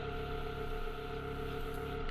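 Yamaha FZ-07's parallel-twin engine running at a steady speed while riding, a constant even tone with no revving up or down.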